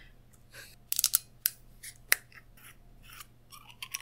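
A sake bottle being opened: a run of sharp, irregular clicks and crackles from the cap and its seal, the loudest about one and two seconds in.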